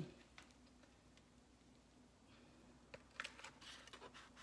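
Near silence with a faint steady hum; about three seconds in, a few short, light crackles as a metal spatula cuts into the crisp, flaky crust of a peach cobbler in a foil pan.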